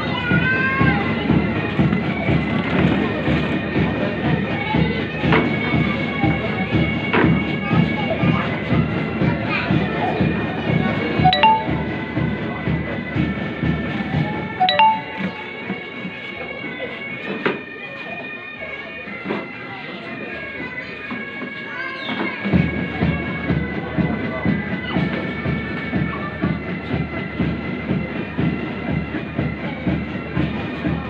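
Pipe band playing a march: bagpipes carry the tune over a steady drum beat. The drums drop out about halfway through, leaving the pipes alone for several seconds, then come back in.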